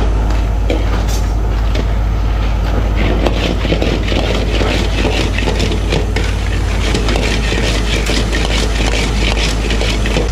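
Gas wok burners running with a steady low roar while a steel ladle scrapes and clanks in a wok of stir-frying lobster, the food sizzling; the ladle strokes come thick and fast from about three seconds in.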